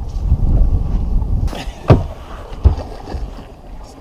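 Two sharp knocks on a boat's deck, about three-quarters of a second apart, the first the loudest, as a person shifts from crouching to kneeling over the side; a low rumble comes before them.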